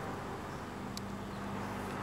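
Faint, steady low outdoor background rumble with a single short tick about a second in.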